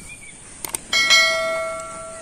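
A bright bell ding that rings out and fades over about a second, just after two quick clicks: the click-and-bell sound effect of a subscribe-button and notification-bell animation added to the video.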